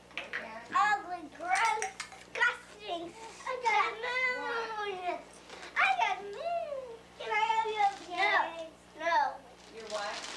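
Young children's high-pitched voices chattering throughout, in short bursts with rising and falling pitch.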